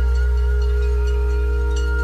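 Ambient relaxation music: a low bass drone under a few held tones that ring on steadily, with no new notes struck.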